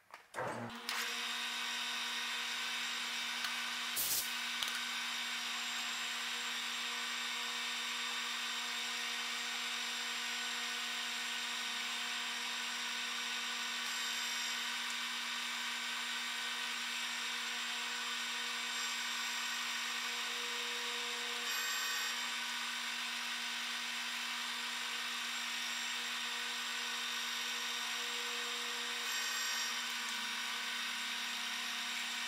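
Metal lathe starting up and running steadily, a constant whine and hiss as the single-point threading tool takes a light pass close to final size on the thread. A short knock about four seconds in.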